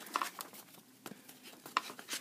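Paper instruction manuals being handled and set down beside a cardboard box: faint paper rustling with a few light taps.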